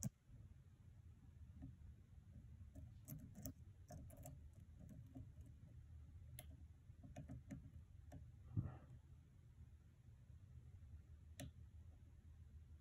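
Faint, irregular metallic clicks of a hook pick working the pin stacks of a Corbin lock cylinder under a tension wrench, with a sharper click at the very start and a soft thump about eight and a half seconds in.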